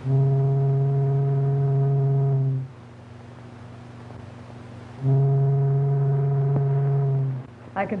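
Two long blasts of a low ship's horn, each about two and a half seconds, a couple of seconds apart, holding one steady pitch.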